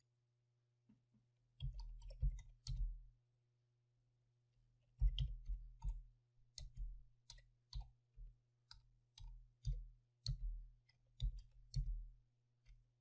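Faint computer keyboard keystrokes clicking in irregular short runs of typing, with a pause of about two seconds after the first few keys.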